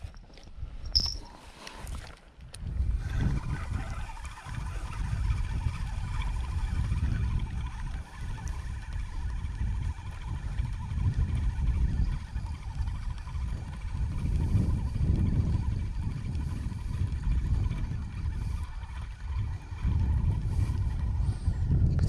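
Wind buffeting the camera microphone: a low rumble that swells and drops in gusts from about two seconds in, with a faint steady higher drone beneath it. A few brief knocks come at the start.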